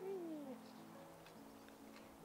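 A single short animal call, falling in pitch over about half a second, at the start, over quiet background music.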